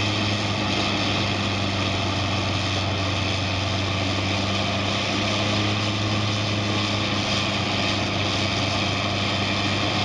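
Vermeer HG4000TX tracked horizontal grinder regrinding ground wood material, its diesel engine and mill running steadily with an even low hum under a dense grinding noise.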